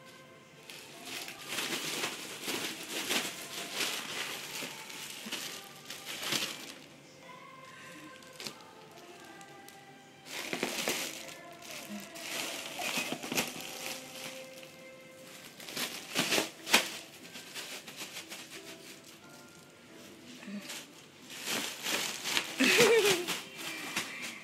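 Foil balloon crinkling in bursts as a baby grabs, squeezes and pats it, with steady music in the background.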